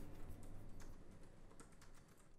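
Typing on a laptop keyboard: quick, irregular key clicks, faint and fading out near the end.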